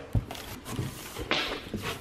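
Packing material rustling as it is handled and pressed into a cardboard box, with a louder rustle about a second and a quarter in.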